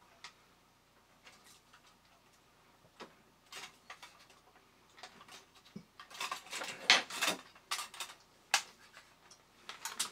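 Small clicks, taps and scrapes of a vintage toy robot's metal body and plastic side pieces being handled and fitted back into place, sparse at first, with a busier run of sharper clicks in the second half.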